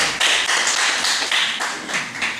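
Audience applauding, a dense run of hand claps.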